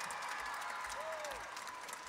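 Audience applauding, the clapping dense and steady, with a few voices over it.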